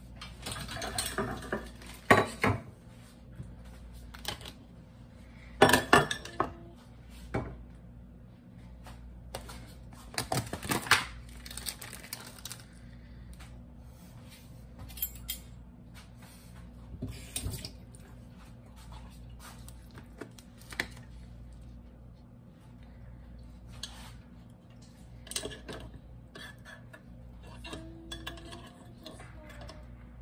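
Kitchen dishes and utensils clattering and clinking as they are handled, in scattered knocks, the loudest about two and six seconds in and a cluster around eleven seconds, fewer and softer later, over a steady low hum.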